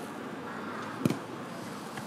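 A single dull thud of a football being struck about a second in, over steady low background noise.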